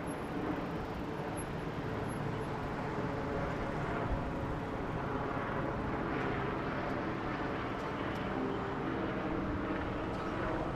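Passenger train running across a railway bridge: a steady, even running noise throughout, with the general hum of city traffic beneath it.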